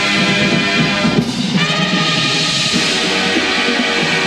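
A drum and bugle corps performing: the brass bugle line plays loud sustained chords over the drums, moving to new chords about a second and a half in. Heard from the stands of an outdoor stadium.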